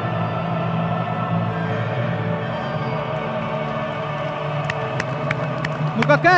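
Majestic orchestral anthem music played over a stadium's sound system, with long sustained chords. A few scattered claps from the crowd come in near the end.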